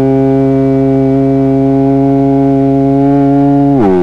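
A man's voice holding one long, steady vowel, stretched out between 'ain't no' and 'about it', heard through a CB radio's receiver; the pitch drops just before the end.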